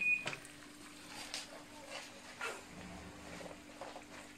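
An oven's electronic beep stops just after the start. A low steady hum follows, with a few faint scrapes and knocks as a glass roasting dish is slid out on the oven's wire rack.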